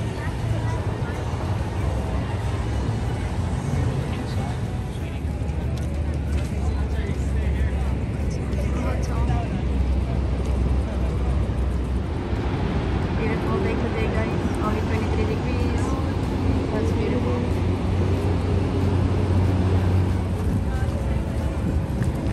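Busy outdoor ambience: a steady low rumble under people talking in the background.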